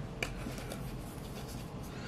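Trading cards being handled and slid off a stack: a faint, steady rubbing of card on card, with a light click about a quarter-second in and another near the end.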